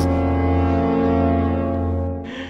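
An added comedy sound effect: one long, low horn-like note held at a steady pitch.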